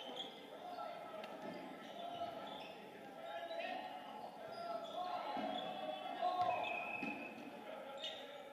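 No-sting dodgeballs smacking and bouncing on a hardwood gym floor now and then, over players' voices calling across the court in a gymnasium.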